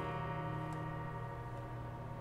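An acoustic guitar chord ringing out and slowly fading after the last strum, with no new notes struck.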